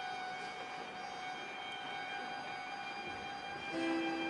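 String orchestra holding a soft, sustained note. Near the end a louder, lower chord enters.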